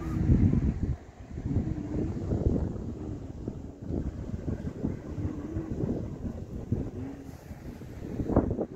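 Wind buffeting the phone's microphone: a gusty, uneven low rumble, strongest in the first second.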